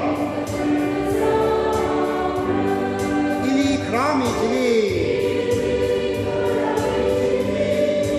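A hymn sung slowly by several voices in harmony, with long held notes gliding from one pitch to the next.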